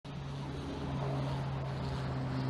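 A steady low engine drone with a rumble beneath it, holding an even pitch.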